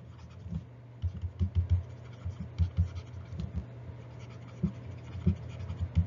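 A stylus writing on a tablet: irregular soft taps and scratches of handwriting strokes, over a steady low hum.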